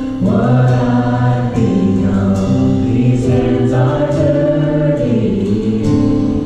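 Live church worship music: two women singing into microphones over a band of keyboard, electric guitar and drums.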